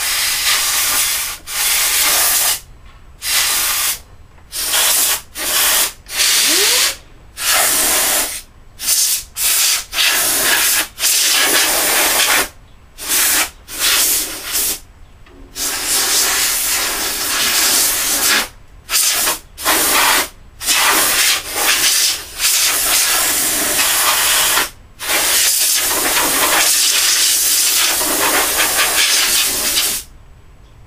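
Compressed-air blow gun on a coiled air hose, hissing in about twenty bursts while blowing dust out of a desktop computer case. The blasts last from a fraction of a second to a few seconds, with the longest one near the end.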